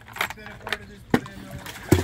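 Water tipped from a plastic bucket into a pool. A few light knocks come first, then a splash near the end, the loudest sound.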